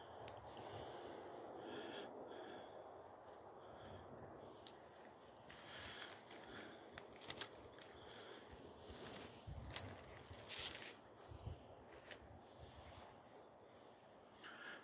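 Quiet forest ambience with faint scattered rustles and light crackles from someone moving through fir branches and over the forest floor; a few slightly louder crackles come in the middle.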